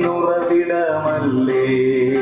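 A Malayalam song playing, a sung note drawn out and bending in pitch between lyric lines over a steady accompaniment.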